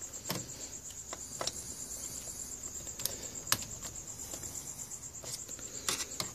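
A screwdriver loosening bracket screws in the metal chassis of a Yamaha CR-2020 receiver: a handful of light, scattered clicks and taps. Under them runs a steady, high-pitched pulsing whine.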